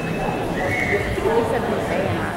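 Audience voices in a hall between songs, with a short, high, wavering shout about a second in.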